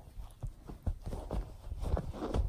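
Two kittens tussling on a bed close to the microphone: irregular soft thumps and rustling of fur and bedding, with a busier scuffle about halfway through.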